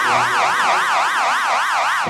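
Electronic warbling alarm tone, sweeping rapidly up and down in pitch about four times a second.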